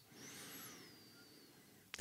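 Near silence: faint room tone, with a very faint high thin tone gliding downward in the first second.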